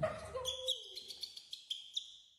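A thump, then a thin, high, steady call from a newborn monkey, held for about a second and a half, with small clicks over it.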